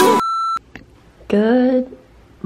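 Music cuts off, then a single short, high electronic beep lasting about a third of a second. About a second later comes a woman's brief vocal sound.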